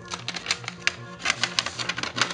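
Paper inner sleeve crackling and rustling in quick, irregular clicks as a vinyl record is slid out of it by hand, over electronic music with a steady repeating bass.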